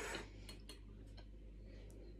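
Faint close-up chewing of a soft curd pastry, with a few small mouth clicks spread over the two seconds.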